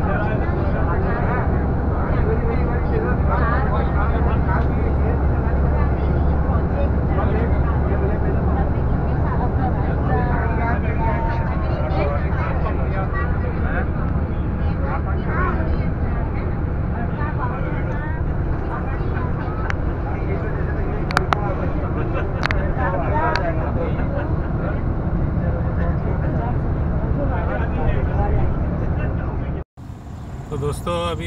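Steady low rumble of a moving bus heard from inside the cabin, with people talking indistinctly over it. Two sharp clicks come about two-thirds of the way through, and the sound cuts off briefly just before the end.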